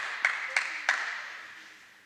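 A few hand claps, four sharp ones about three a second, echoing in a large indoor tennis hall and dying away.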